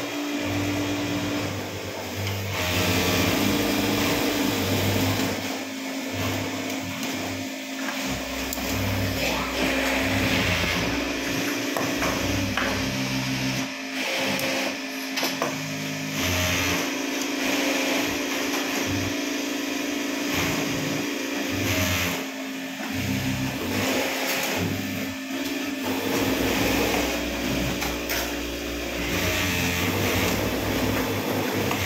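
Singer industrial flatbed sewing machine running as fabric is stitched, with music and singing playing in the background.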